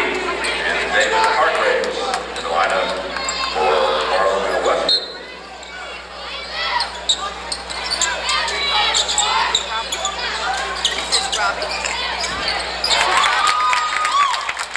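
Spectators' voices filling a gymnasium, with a basketball bouncing on the hardwood floor during play. The crowd noise drops briefly about five seconds in.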